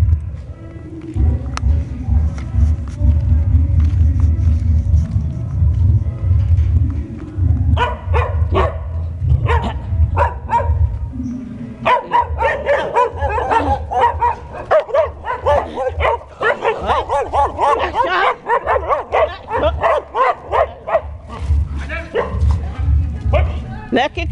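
Dogs barking rapidly and repeatedly, starting about eight seconds in and most frantic in the middle, over the steady heavy bass beat of loud pancadão (Brazilian funk) music from a sound system.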